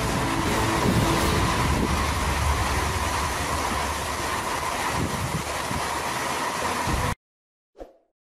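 Storm noise of heavy rain and wind, a loud steady roar that cuts off suddenly about seven seconds in. A brief soft sound follows just before the end.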